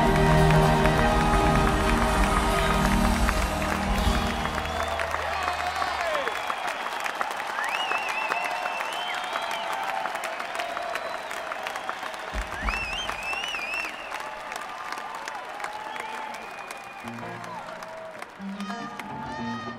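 A live band's closing notes ring out for the first four to five seconds, then a large arena audience applauds and cheers, the applause slowly dying down.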